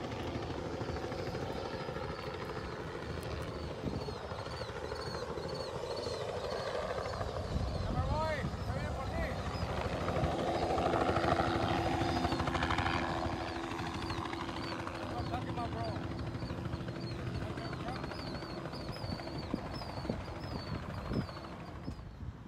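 A helicopter flying over, its rotor and engine noise swelling to a peak about halfway through and then fading as it passes.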